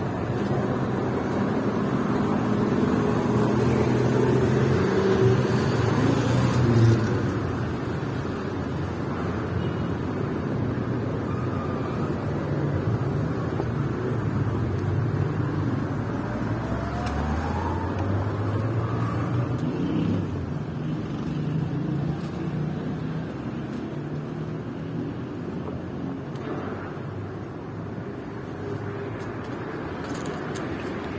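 Road traffic: motor vehicle engines running along the street, loudest in the first seven seconds, with one engine rising in pitch as it speeds up about sixteen seconds in.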